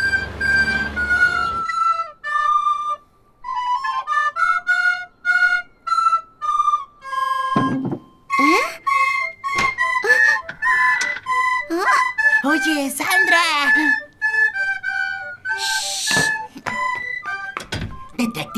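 A recorder playing a simple tune of held notes, opening over a brief whoosh. From about the middle on, the tune continues under cartoon sound effects: clicks, quick pitch sweeps and wordless voice sounds.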